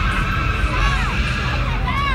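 Crowd at a car meet: short rising-and-falling whoops or yelps, a few times, over a steady low rumble of idling engines and crowd noise.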